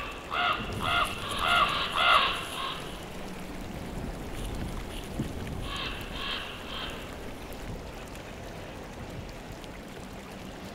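A corvid cawing: four calls in quick succession, then three more about six seconds in, over a steady low background noise.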